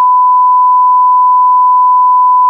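Censor bleep: one loud, steady, pure beep tone held without a break, edited in over speech to hide what is being said.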